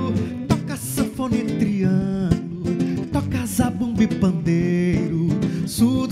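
Two acoustic guitars, a nylon-string classical guitar and an f-hole hollow-body acoustic guitar, playing an instrumental forró passage: a picked melody stepping from note to note over the accompaniment.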